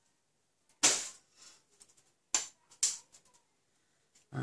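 Plastic clicks and knocks from the opened case of an adhesive tape runner being handled for a refill. There is one sharp knock about a second in, then two more, a little apart, near three seconds, with a few faint taps between them.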